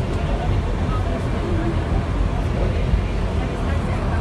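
Steady low rumble of the inclined lift carrying its car up the ski-jump tower, with indistinct voices of people talking.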